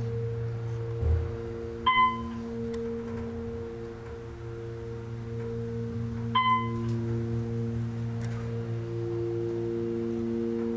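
Otis hydraulic elevator riding up: a steady hum with a few held low tones from the running machinery, and two short electronic dings about four and a half seconds apart as the car passes floors.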